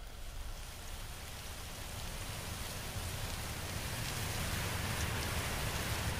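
A steady hiss like falling rain, with faint scattered ticks, slowly growing louder.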